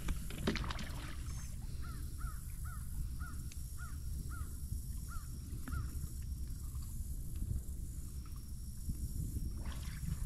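A bird calling: about ten short calls in quick succession, starting about two seconds in and ending near six seconds, over a steady low rumble.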